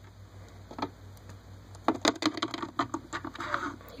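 Small plastic toy pieces handled close to the microphone: a single light click about a second in, then a run of light clicks and rustling through the second half.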